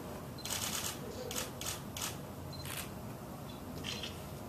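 Camera shutters clicking several times during a posed handshake photo, with a few very short high beeps between the clicks.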